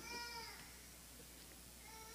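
A baby's faint high-pitched vocalising, a short coo or whimper that falls slightly in the first half-second, with another starting near the end.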